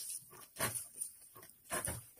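Stems rustling and small green fruits snapping off and dropping into a bamboo basket as they are stripped by hand, in a few short bursts.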